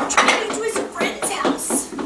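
A quick run of light clicks and clatters, like small hard objects handled on a tabletop, with a woman's voice under them.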